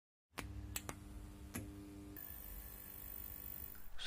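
A brief stretch of dead silence, then quiet room noise with a faint steady hum and a few sharp clicks from operating the computer, the first three within about the first second and a half.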